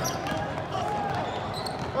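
A basketball bouncing on a hardwood gym floor during play: a few sharp knocks over the steady background noise of a large hall.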